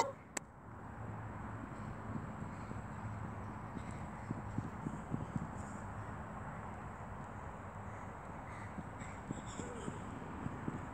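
Quiet, steady outdoor background noise, with a few faint short taps about four to five and a half seconds in.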